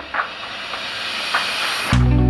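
A steady hiss, with two faint brief accents.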